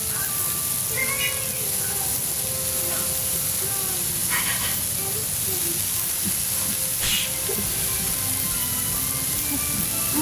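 Steady sizzle and hiss of food cooking on a hot iron plate, under soft background music, with a couple of short breathy puffs about four and seven seconds in.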